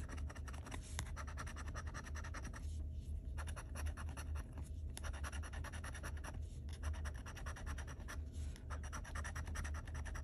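A metal scratcher tool scraping the latex coating off a lottery scratch-off ticket in quick repeated strokes, with short pauses every couple of seconds, over a steady low hum.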